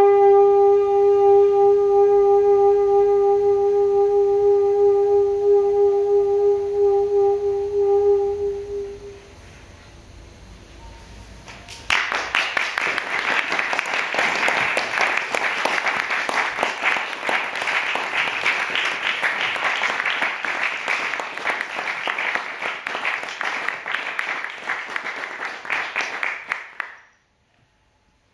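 Soprano saxophone holding one long final note that fades out about nine seconds in. After a short hush, audience applause breaks out suddenly and keeps going.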